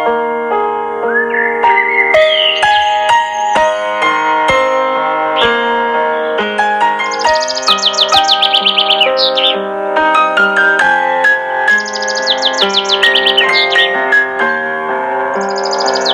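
Gentle solo piano music with bird chirps laid over it. A rising whistle comes about two seconds in, then quick runs of high chirps come in three spells, from about seven seconds in, at about twelve seconds and near the end.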